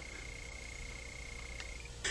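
Quiet room tone with a faint, steady high-pitched whine that stops just before the end, over a low hum.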